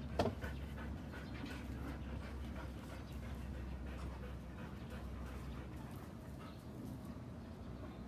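A dog, the Irish Setter, panting close by, with a short knock just after the start.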